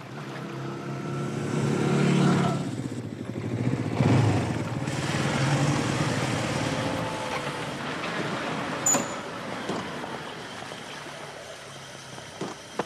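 A car engine running close by, growing louder about two seconds in and again around four seconds, then fading away. A short sharp click sounds near nine seconds in.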